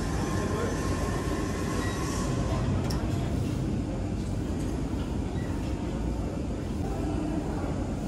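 Steady low rumbling room noise of a busy gym floor, with a single faint click about three seconds in.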